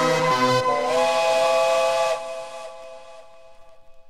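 Closing bars of a happy hardcore track: the bassline stops about half a second in, leaving a held synth chord that slides up slightly, then drops away about two seconds in and fades out.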